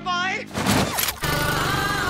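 Trailer soundtrack: the end of a spoken line, then about half a second of rapid rattling gunfire, then music carrying a long held, wavering note.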